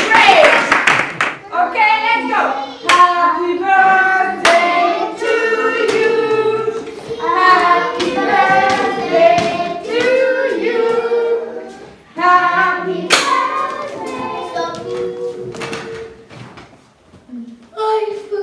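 A group of children singing a song together, with hand claps marking the beat. The singing stops about two seconds before the end.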